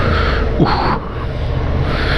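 Suzuki V-Strom 650 XT's V-twin engine running under load as the motorcycle pulls through deep gravel, with a brief louder burst just over half a second in.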